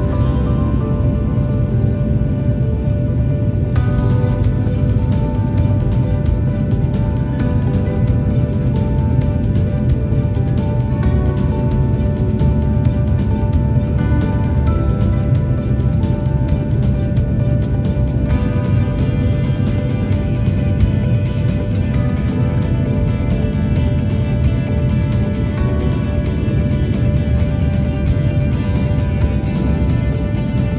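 Background music, a slow melody of held notes that grows fuller about four seconds in, over the steady low cabin rumble of a Boeing 737 jet airliner on descent.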